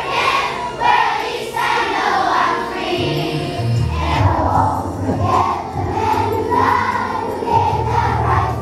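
A large children's choir of schoolchildren singing a song together, with a steady low musical accompaniment underneath.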